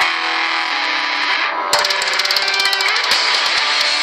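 Electric guitar playing along with a heavy metal band track: held notes at first, then drums and cymbals come in hard about two seconds in.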